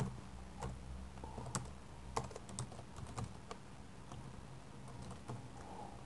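Faint computer keyboard typing: irregular, separate keystrokes as a line of code is typed.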